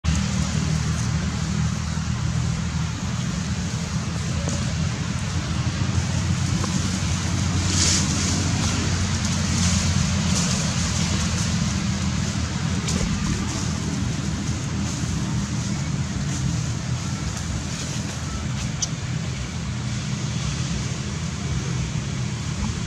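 Steady low rumbling outdoor background noise, with a few faint sharp clicks scattered through it.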